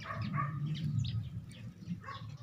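Several short, high chirps from birds over a low steady background hum.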